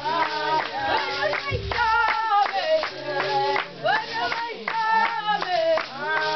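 Women's voices singing a Zulu sangoma ceremonial song with steady rhythmic hand clapping. A single drum thuds low under it in the first couple of seconds.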